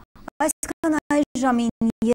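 A woman's voice speaking, starting about half a second in, broken up by rapid, regular audio dropouts that chop it into short, choppy fragments.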